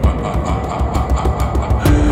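Rock music intro with a steady drum beat over a pulsing bass; near the end the band swells louder as long held notes come in.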